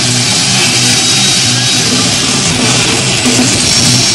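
Live heavy metal band on stage: amplified electric guitars playing long, held chords, loud and steady, with a dense bright hiss on top.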